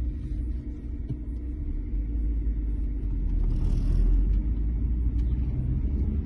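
Low, steady rumble of a car driving, heard from inside its cabin.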